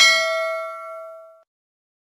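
Notification-bell sound effect from a subscribe-button animation: a single bright bell ding. It rings with several clear pitches and fades, then cuts off about a second and a half in.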